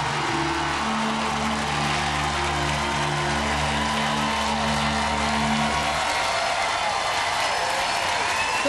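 TV show theme music over a studio audience applauding and cheering; the music stops about six seconds in, leaving the applause.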